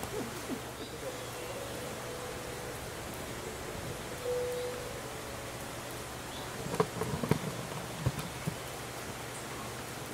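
A steady buzzing hum for a few seconds, then a brief run of sharp knocks and thumps about seven to eight and a half seconds in.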